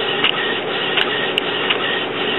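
Epson WorkForce inkjet printer printing a page: the print carriage and paper feed run steadily, with a few sharp clicks as the sheet is fed out.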